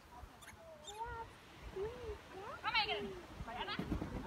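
A dog barking and yelping in short, high, excited bursts, the loudest near three seconds in, with a person's drawn-out calls in between.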